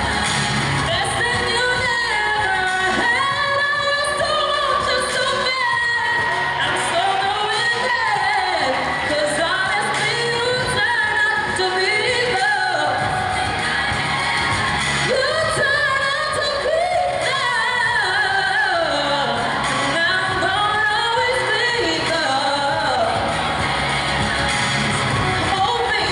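Solo voice singing a pop song into a handheld microphone over backing music, without pause.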